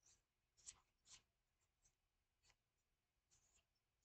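Faint, short scratchy crackles, about half a dozen in four seconds: fingers picking and peeling a dried charcoal peel-off mask from the skin of the face.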